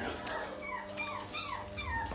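Young French bulldog puppies whimpering: a run of short, high whines, about three a second, each falling in pitch.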